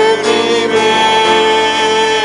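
Church praise team performing a slow worship song with band accompaniment. A voice holds a long note with vibrato from about a second in.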